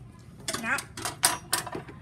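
A few sharp clicks and scratches from hands working a new roll of clear tape, picking at its stuck end. A short spoken word comes just before them.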